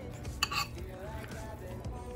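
A spoon or fork knocking and scraping against a bowl as ground meat is mixed in it, with one sharp clink about half a second in. Quiet background music plays underneath.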